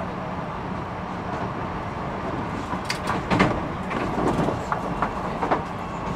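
Keio 1000 series electric train running, heard from inside the car: a steady running noise, with a run of sharp clacks from the wheels on the track from about halfway through.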